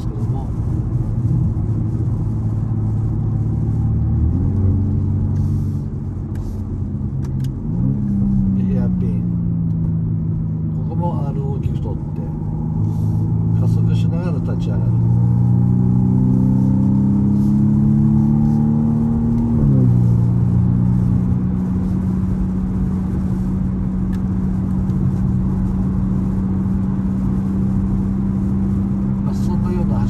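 Car engine heard from inside the car while lapping a circuit. The note steps up about four seconds in and dips around eight seconds. It then climbs slowly for about eleven seconds under acceleration, falls sharply just before twenty seconds, and holds a steady drone to the end.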